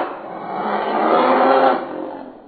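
A growling dinosaur roar given as the T. rex's reply. It rises again about half a second in and fades away near the end.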